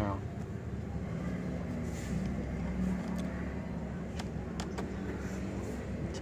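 A few faint clicks of a screwdriver working the screws of a laptop's hard-drive caddy, over a steady low hum.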